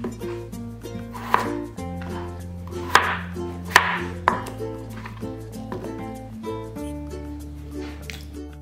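A kitchen knife chopping peeled raw potatoes into chunks on a plastic cutting board, with several sharp chops through the middle. Background music plays underneath.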